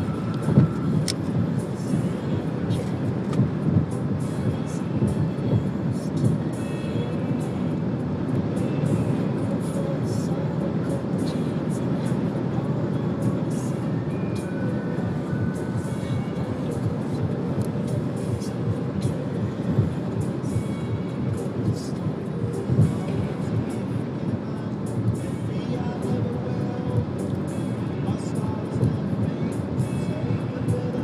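Steady road and engine noise of a car driving along a highway, heard from inside, with music playing over it.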